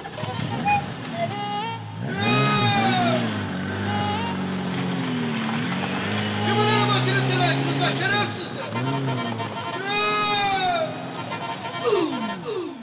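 A song with a man singing long, held notes that bend and slide in pitch, over instrumental accompaniment.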